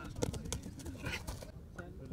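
Indistinct voices talking, with a few short knocks.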